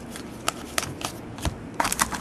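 Trading cards being handled and flicked through by hand, with about four light, sharp clicks of card stock.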